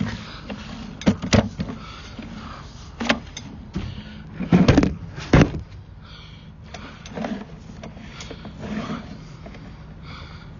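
Sewer inspection camera's push cable being pulled back through a cleanout: a handful of sharp knocks and scrapes, the loudest a little under five seconds in and again about half a second later, over a steady low mechanical hum.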